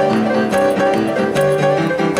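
Upright piano played with both hands: a steady, unbroken stream of notes and chords.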